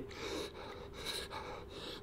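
A man breathing audibly, a few soft breaths in a pause between sentences, while sitting in cold water.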